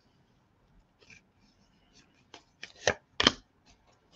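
A tarot deck being shuffled by hand: faint card ticks, then a few sharp card snaps in the second half, the two loudest close together near the end.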